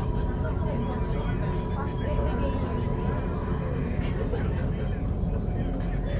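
Commuter train running at speed, heard from inside the carriage: a steady low rumble of wheels on track, with a thin steady tone held above it.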